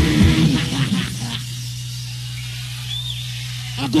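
Heavy metal band with distorted electric guitars ending a song live. The dense sound dies away about a second in, leaving a steady amplifier hum and a short whistle near three seconds in.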